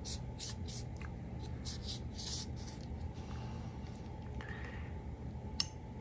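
Cotton swab scratching and rubbing faintly inside the handle of a Buck 110 folding knife, in short irregular strokes as it wipes dirt out of the blade slot.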